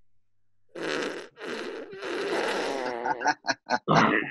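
Recorded fart sound effects played back from a computer. Three longer farts start about a second in, the last with a wavering pitch, followed by a quick run of short ones near the end.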